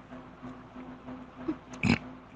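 A pause in a man's lecture with a faint steady electrical hum from the recording. Near the end there is one short, sharp breath sound from the speaker just before he speaks again.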